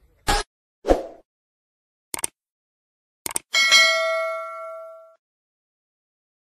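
Subscribe-button animation sound effects: a few sharp clicks, two of them doubled like mouse clicks, then a bell-like notification ding about three and a half seconds in that rings out and fades over about a second and a half.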